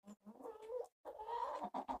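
Rhode Island Red hens vocalizing: a short call, then a longer drawn-out call about a second in, followed by a few quick clucks.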